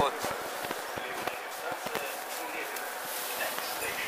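Steady hiss of metro station ambience heard from inside a standing train car with its doors open, with faint scattered clicks and rustles.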